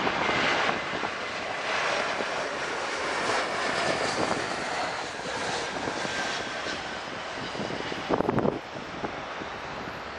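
Jet engines of an Airbus A321 running at go-around power as it aborts the landing and climbs away, with gusty wind buffeting the microphone. A sharp, louder burst of wind noise comes about eight seconds in.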